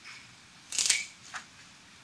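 Handling noise: a short scuffing sound about three-quarters of a second in, then a single light click, with faint scattered small taps around them.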